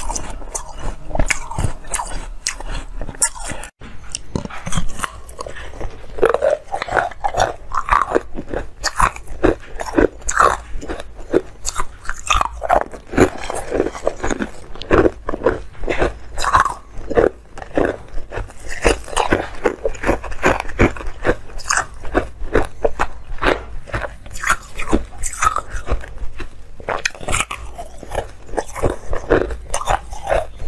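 Frozen ice being bitten and crunched between the teeth: a dense, irregular run of sharp cracks and crunches mixed with chewing, picked up close on a lapel microphone. There is a brief break in the sound about four seconds in.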